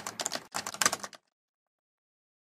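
Typing sound effect: a fast run of keystroke clicks in two bursts, stopping a little over a second in.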